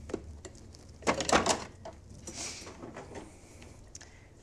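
A metal muffin tin and a freezer drawer being handled: a cluster of knocks and clatter about a second in, then a brief soft rush.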